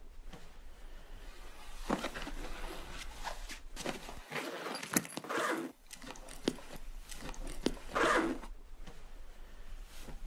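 A black soft-sided suitcase being packed and zipped shut: clothes rustling, zipper runs and small clicks and knocks of handling, coming in several short bursts, the loudest about eight seconds in.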